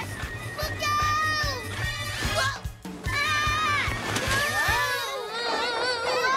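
Cartoon soundtrack: background music with a steady low beat under excited children's voices whooping and laughing.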